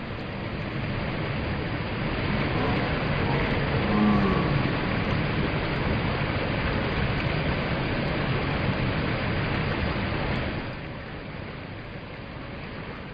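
Water overflowing a full dam and pouring down its spillway: a steady rushing noise that drops off about ten and a half seconds in.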